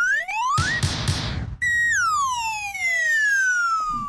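Edited-in cartoon sound effects: whistles glide upward, a burst of noise comes about a second in, then one long whistle falls slowly in pitch until the end.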